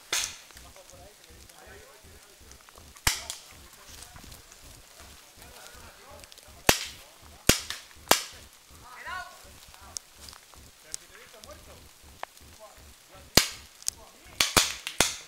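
Paintball markers firing single shots: about five sharp pops at irregular intervals, three of them close together in the middle.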